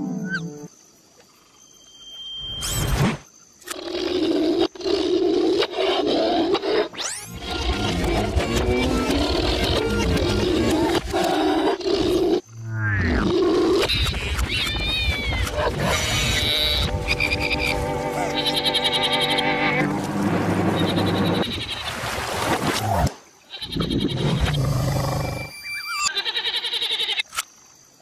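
Cartoon soundtrack: music mixed with comic sound effects and a creature's roaring and growling, after a brief near-quiet moment in the first few seconds.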